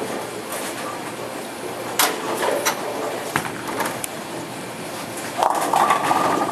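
Bowling alley sounds: balls rolling and pins clattering on the lanes, with a sharp crack about two seconds in and a louder, sustained clatter of pins starting near the end.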